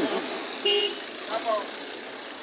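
Roadside traffic noise with a short vehicle horn toot a little over half a second in, and a faint voice in the background.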